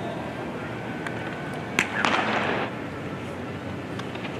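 A pitched baseball popping sharply into the catcher's leather mitt once, followed right away by a short burst of noise, over a steady background murmur of the stadium crowd.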